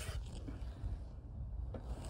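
Faint handling and rustling noise from gloved hands working among the fuses and wiring of a van's fusebox, over a steady low rumble.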